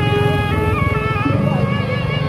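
Sasak gendang beleq ensemble playing: large two-headed barrel drums beaten in a fast, dense rhythm under a melody of held notes that step from pitch to pitch.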